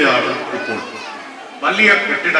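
Children's voices talking and chattering, louder again near the end.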